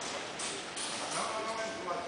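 Indoor hall background of distant voices and music, with a few short knocks that sound like footsteps on a hard floor.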